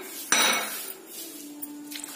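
A glass jar knocks once against a steel bowl or the counter about a third of a second in, ringing briefly, followed by quieter kitchen handling noise as the jar of milk is lifted over the bowl to pour.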